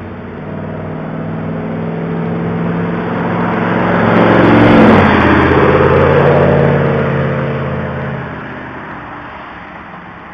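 Motorcycle driving past at speed: the engine note swells as it approaches, is loudest about five seconds in, drops in pitch as it goes by and fades away.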